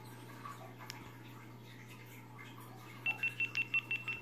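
GoPro Hero 5 Black beeping as it powers off: a quick run of about seven short high beeps starting about three seconds in, over a faint low hum.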